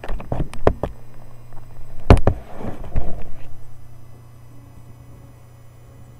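Handling noise as the camera is turned around and set down: a quick run of sharp knocks, a loud thump about two seconds in, then rustling that dies away.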